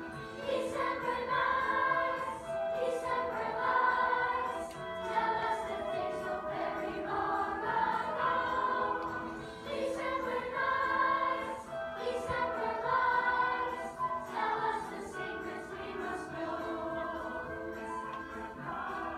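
A choir singing in phrases of a few seconds, with held notes underneath.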